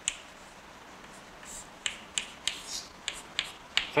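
Chalk writing on a blackboard: a sharp tap just after the start, then after a quiet second or so a run of chalk taps and clicks, several a second, with a couple of short scrapes between them.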